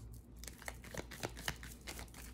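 Stiff circular tarot cards being handled: faint rustling and about five soft, sharp clicks as the cards slide and tap against one another.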